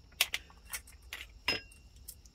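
Small metal carburetor parts clicking and clinking as they are handled: about six light clicks, the one about halfway through ringing briefly like small metal.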